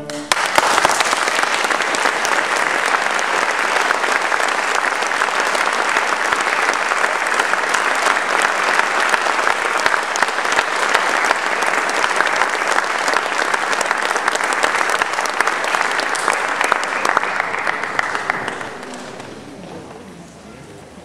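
Audience applauding right after the final chord of a string quartet, steady for about eighteen seconds and then dying away near the end.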